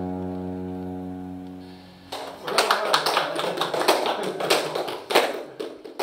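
The last held chord of the music fades out over about two seconds, then a small audience applauds for about four seconds.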